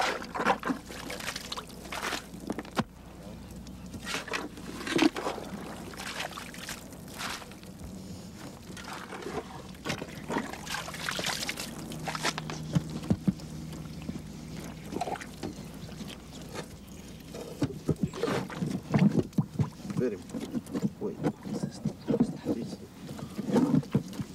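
Shovels digging into packed soil at a grave: an irregular run of sharp strikes and scraping, busiest in the last few seconds, with indistinct voices mixed in.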